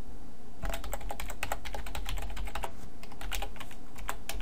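Computer keyboard typing: quick runs of keystrokes starting about half a second in, with a brief pause near three seconds before a few more.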